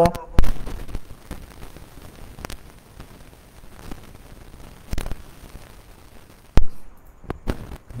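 A handful of sharp clicks and knocks, loudest about half a second in and again near the end, with faint background noise between them.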